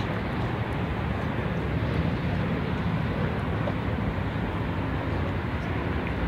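Steady, even noise of highway traffic, with no single vehicle standing out.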